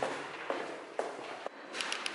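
Footsteps going down marble stairs: four hard steps, about two a second.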